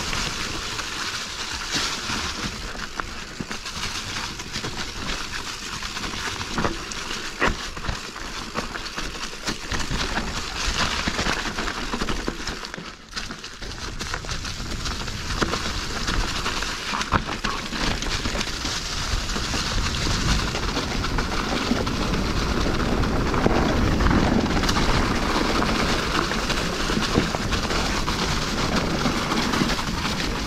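Specialized Stumpjumper Evo Alloy mountain bike descending fast over a leaf-covered dirt trail: tyres rolling through dry leaves, wind rushing over the mic, and frequent clicks and knocks as the bike rattles over bumps. It goes briefly quieter about halfway through, then picks up again, a little louder toward the end.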